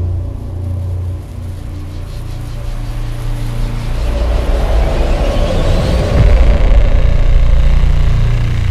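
Cinematic logo-reveal sound design: a deep, steady rumble with a rising whoosh about four seconds in, swelling to its loudest near the end.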